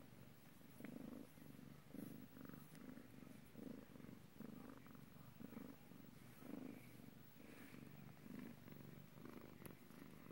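A long-haired grey domestic cat purring while being scratched under the chin: a faint, low rumble that pulses evenly, about two to three times a second.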